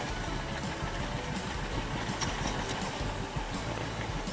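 Small boat engine running steadily as the outrigger boat travels under way.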